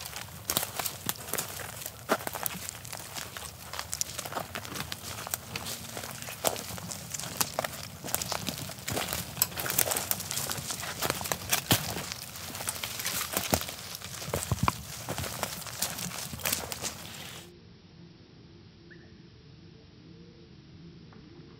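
Footsteps crunching and rustling through dry leaf litter and twigs on a forest floor, a dense run of crackles and snaps. The crunching stops about three seconds before the end, leaving only a faint hush.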